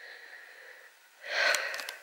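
A person's short, noisy breath close to the microphone, about a second and a half in, after a moment of faint hiss.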